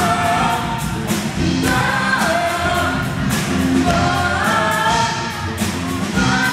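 Two girls singing a pop song into microphones over a live school band, with the drum kit keeping a steady beat.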